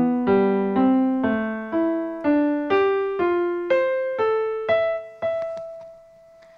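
Electronic keyboard with a piano voice playing a slow line of single notes, about two a second. The line climbs in pitch with small dips and ends on a held note that fades. It is a sonification of a lake's surface-water temperatures, one note higher for every degree warmer, rising as the water warms from winter to summer.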